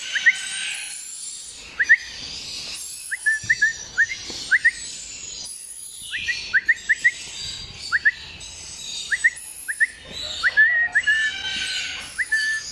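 Red-flanked lorikeet calling with many short, thin, rising chirps, often two or three in quick succession, over fainter high twittering.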